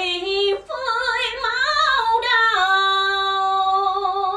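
A woman singing a cải lương (Vietnamese reformed opera) excerpt, her voice sliding through ornamented turns and then holding one long steady note from a little past halfway.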